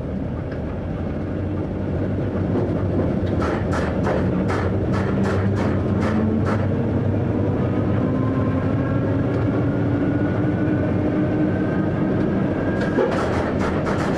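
Electric train running, heard from the driver's cab: a steady rumble with runs of sharp clicks, about two a second, from the wheels over rail joints, and a faint whine slowly rising in pitch in the second half.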